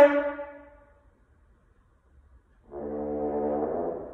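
Unaccompanied French horn: a loud held note stops at the start and rings away in the hall's reverberation for about a second. After a pause, a softer, lower held note comes in about two and a half seconds in and fades near the end.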